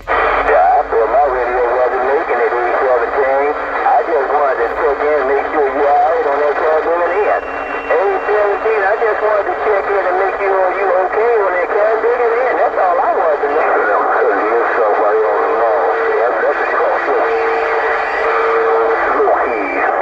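A distant station's voice received over a Cobra 148GTL CB radio's speaker, narrow and tinny, talking without a break. A steady whistle comes in twice near the end.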